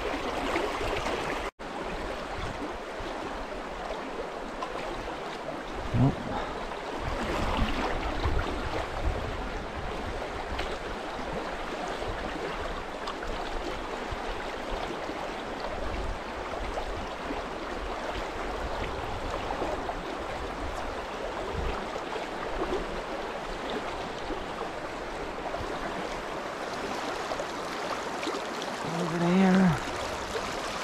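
Steady rush of shallow creek water running over a riffle, with a brief voice sound near the end.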